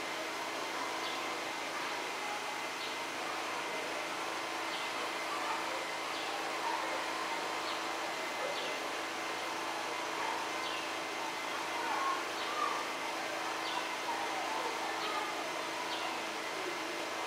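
Steady outdoor background noise with a faint murmur of distant voices, a constant low hum, and a short high falling chirp that repeats about once a second.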